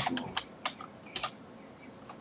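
Keystrokes on a computer keyboard: about five scattered key clicks in the first second and a bit, as a command is finished and entered.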